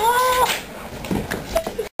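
A boy's high-pitched, drawn-out vocal exclamation: one held note of about half a second that rises and falls slightly, with quieter, noisier sound after it and a brief cut-out just before the end.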